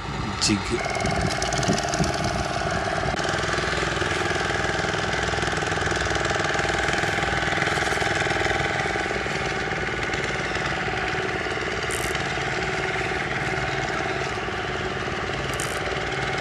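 A steady, engine-like running noise with a constant hum, coming in about a second in and holding level.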